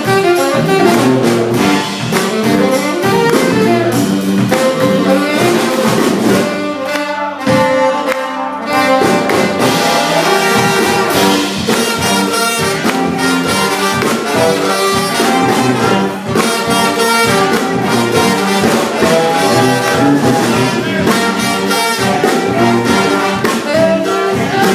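Live brass band playing an upbeat number: trumpets, trombones, saxophones and a sousaphone over a steady drum beat, with a brief break about seven seconds in. It is heard from the audience in a club room.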